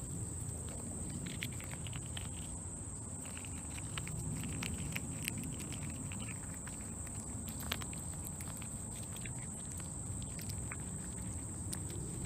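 Quiet outdoor ambience: a steady high-pitched whine over a low rumble, with faint scattered small clicks and rustles.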